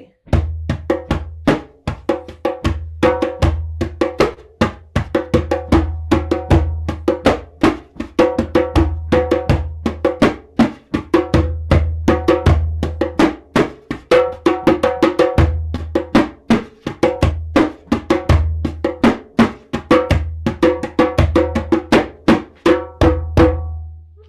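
Hand drum with a skin head played with bare hands in a steady, continuous rhythm of several strokes a second, deep bass strokes under higher, sharper tones and slaps. It stops just before the end.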